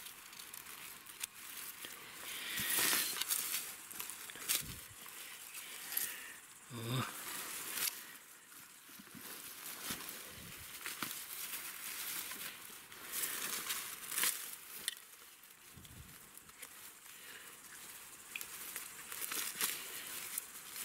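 Dry grass and leaves rustling and crackling in irregular bursts as a hand pushes through them and handles a knife while picking mushrooms. A brief murmur of a voice about seven seconds in.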